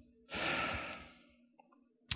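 A man breathing out heavily into his fist: one breathy sigh of about a second, then quiet.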